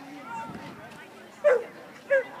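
A dog barks once, a short sharp bark about one and a half seconds in.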